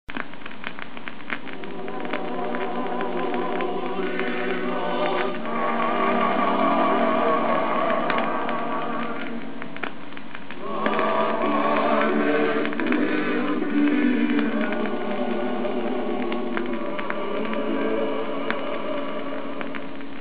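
Instrumental introduction of a gospel song played from an old vinyl LP: sustained accompaniment chords that change every few seconds, with scattered surface clicks from the record.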